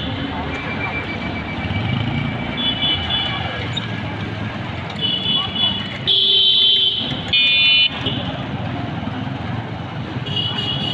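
Street traffic: motorcycle and auto-rickshaw engines running past, with short vehicle horn toots throughout. Two louder horn blasts come about six and seven seconds in.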